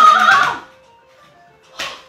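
A person's loud, drawn-out cry of "oh" in distress, fading out about half a second in, over faint background music; a brief sharp noise comes near the end.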